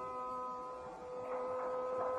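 A steady Carnatic music drone of held pitches, the percussion silent, with a soft sustained note swelling in about a second in.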